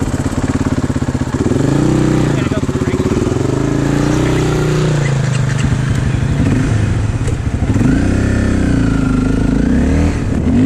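Dirt bike engine running as it is ridden along a trail, its revs rising and falling several times as the throttle is opened and eased off.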